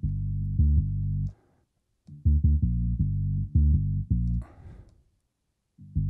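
A punchy dub synth bass loop playing through the BassLane Pro stereo-bass plugin while its compressor is being adjusted. It plays held low notes with a few short, punchy hits, and breaks off briefly twice.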